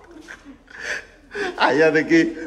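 A person's voice: a short gasping breath about a second in, then a man talking or laughing near the end.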